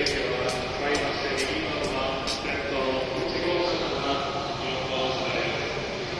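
Indistinct public-address announcement echoing through a Shinkansen station platform hall, over steady station background noise.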